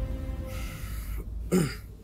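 A man clears his throat with a short gruff cough about one and a half seconds in, after a breathy rush of air, over soft background music.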